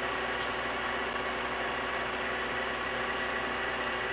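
Mini lathe running steadily in reverse, an even motor and gear hum with a faint steady high tone.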